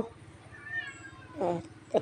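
A cat meowing once, softly: a single drawn-out call lasting about half a second.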